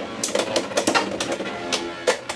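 Beyblade X spinning tops, Leon Claw against a Hells Scythe 4-60 Low Flat, clashing and rattling in a plastic stadium: a fast, irregular run of sharp clicks and knocks.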